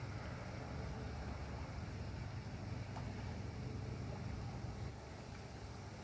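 Steady low outdoor rumble with a faint hiss over it, the kind of background made by wind on the microphone or distant traffic; it eases slightly near the end.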